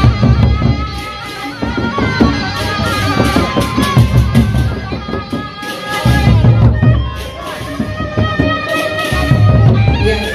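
Sasak gendang beleq ensemble playing: large barrel drums beaten with sticks in loud, surging rhythms, with cymbal clashes and a held, reedy melodic line above.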